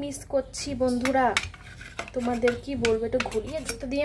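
Steel serving spoon clinking and scraping against the dishes while curry is being served, with a few sharp clinks. A voice talks underneath.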